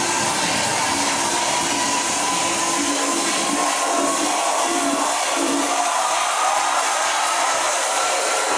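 Tribal house DJ set in a breakdown: the bass drops away after about three seconds and a rushing noise sweep with a slowly rising tone builds toward the next drop.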